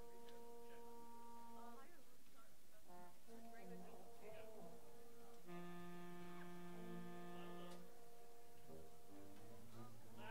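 String players tuning their instruments: long, steady held notes one after another, with several notes sounding together from about five and a half to eight seconds in.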